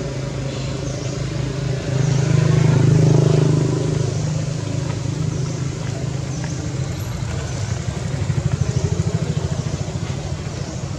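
A motor engine running with a steady low hum, growing louder about two seconds in and easing off after about four seconds, then throbbing in quick pulses near the end.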